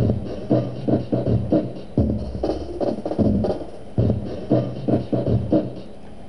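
A sampled drum loop playing from a software sampler, time-stretched to the song's tempo: a steady beat of drum hits, about two a second. Playback stops near the end.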